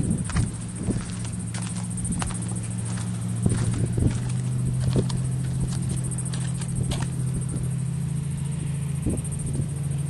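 A steady low mechanical hum that sets in about half a second in and holds at one pitch, with a few light knocks and clicks over it.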